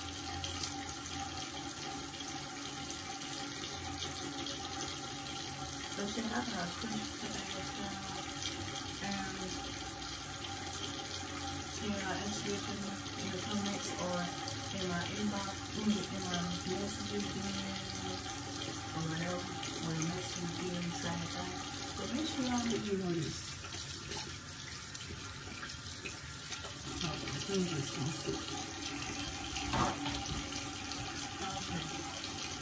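Bathroom sink tap running steadily.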